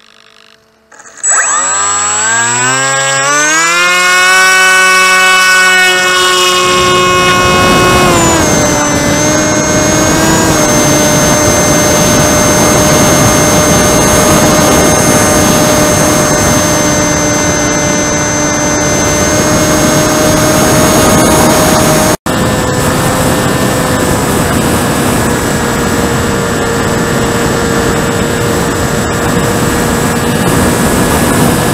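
Brushless electric motor and 10x6 propeller of an FX-61 Phantom flying wing. About a second in it spins up with a rising whine to a steady high pitch, eases down a little about eight seconds in, and then runs on steadily with a rushing noise beneath it. There is a split-second dropout about two-thirds of the way through.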